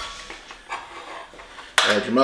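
A metal measuring spoon clinking against metal cookware: a few faint light taps, then one sharp, ringing clink near the end.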